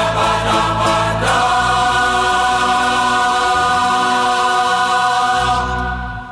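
Mixed choir with bouzouki, guitar, bass and piano on the closing chord of the song: an accented hit about a second in, then the chord held steady, starting to fade near the end.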